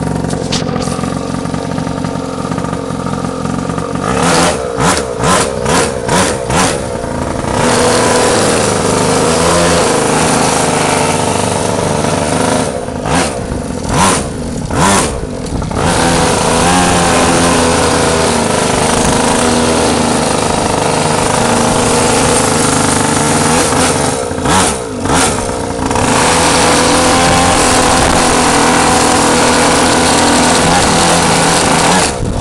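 Small motorbike engine under way on a test ride after an adjustment. The throttle is blipped in a quick series several times, about four to seven seconds in, around thirteen to fifteen seconds and around twenty-five seconds. In between it is held open at steady, higher revs.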